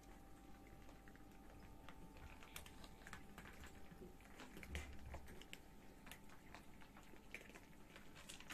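Many cats crunching dry kibble: faint, irregular crunching clicks, over a faint steady hum.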